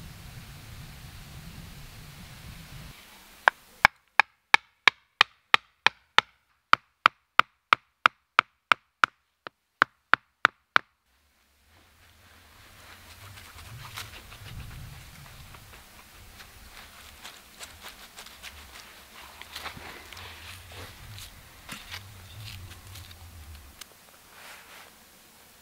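Wooden mallet driving a sharpened wooden stake into the ground: about twenty sharp wooden knocks at roughly three a second, from a few seconds in until about eleven seconds. Afterwards, quieter rustling of leaves and handling of sticks.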